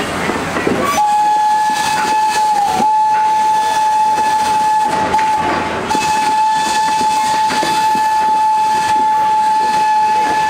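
Steam locomotive whistle blowing one long single-note blast that starts about a second in and holds on, wavering briefly twice, over the rumble of passenger coaches rolling past.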